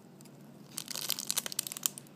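Clear plastic packaging bag crinkling as a fingertip squeezes the foam squishy inside it, a quick run of crackles starting under a second in.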